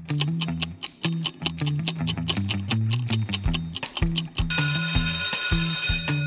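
Quiz countdown-timer sound effect: a clock ticking quickly and evenly over a low bass line, then an alarm-clock bell ringing from about four and a half seconds in, signalling that the answer time is up.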